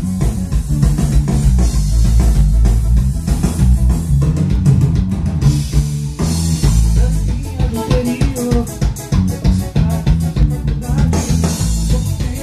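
Electric bass guitar playing a line along with a band track with drum kit.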